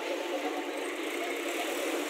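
Steady outdoor street noise, typical of traffic running past, with no distinct events.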